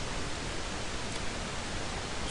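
Steady, even hiss of the recording's background noise, with no other sound.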